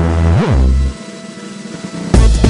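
Electronic background music: a sustained low synth chord with a quick rising-and-falling pitch sweep about half a second in, then thinning to a quieter held tone for the second half.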